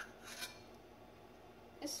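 Faint scraping of a metal spoon against the inside of a stainless steel saucepan as foam is skimmed off boiling jelly, with one short scrape about half a second in.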